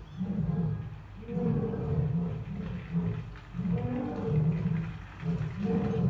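Asian lion roaring: a run of short, low calls, about one a second.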